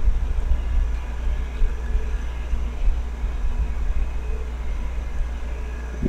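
Steady low hum, with faint scattered noise above it.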